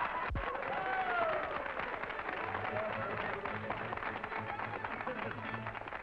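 Studio audience applauding and laughing after a comedy punchline, with a band's steady play-off music underneath. There is a single low thump a moment after the start.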